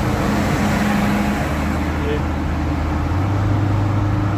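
Car driving at highway speed on a wet road, heard from inside the cabin: a steady low engine and drivetrain hum under a constant hiss of tyres on the wet surface.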